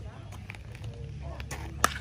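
A baseball bat hits a pitched ball: a single sharp crack near the end, against quiet open-air field ambience.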